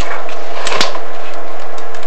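Loud, steady hiss with a thin steady tone under it, and two short clicks about three-quarters of a second in.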